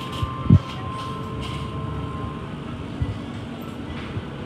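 Steady hum of a convenience store's glass-door refrigerated display cases, with a faint held tone above it. A single low thump comes about half a second in.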